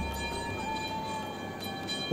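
Faint background music: soft held tones over a low steady hiss, with one note shifting slightly in pitch about halfway through.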